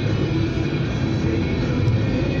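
Road and engine noise inside a moving car's cabin, a steady rumble, with music playing along under it.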